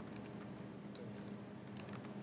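Computer keyboard being typed on: a quick, uneven run of light key clicks, over a faint steady hum.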